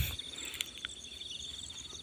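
Insects trilling steadily and quietly: a high, rapidly pulsing buzz with faster repeated chirps above it.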